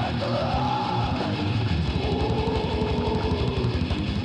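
Death metal band recording: distorted guitars over fast, dense drumming, with long held notes that glide slightly in pitch above them.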